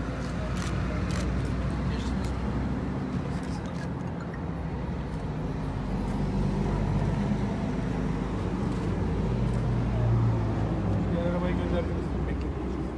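Crowd murmur over a steady low hum of road traffic and engines.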